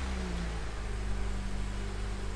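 A steady low mechanical hum with a faint steady tone above it and an even background hiss.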